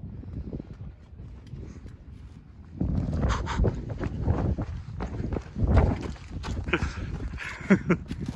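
Footsteps of a person walking on a dirt track, an irregular run of scuffs and thuds that starts about three seconds in.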